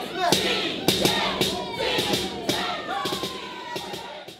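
Live concert audio: crowd voices over music, with sharp percussive hits, fading toward the end.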